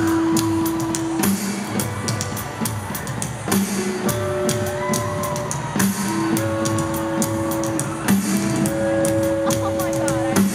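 Live rock band playing in an arena: long held guitar notes over a steady drum beat, recorded from the crowd.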